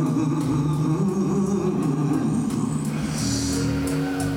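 Live electric blues band playing: electric guitar lines over bass and drums, with no singing.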